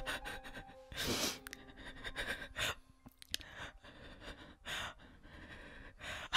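A woman crying, her breath coming in several short noisy bursts, the strongest about a second in. Faint held music tones lie beneath.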